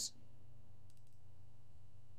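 A couple of faint clicks from the computer's mouse or keys about a second in, over a low steady hum.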